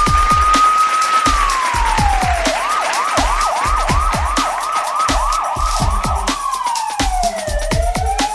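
A siren sound effect over music with a steady kick-drum beat, about two beats a second. The siren wails slowly up, falls about a second in, then switches to a fast yelp of rising sweeps about three a second. It falls and starts to rise again near the end.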